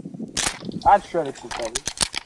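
A sharp crack about half a second in, then several goose honks, and a quick run of sharp clicks near the end as a shotgun is handled.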